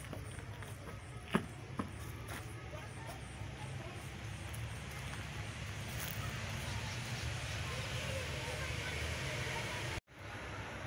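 Outdoor playground ambience: children's indistinct voices over a steady low rumble, with two sharp knocks about a second and a half in.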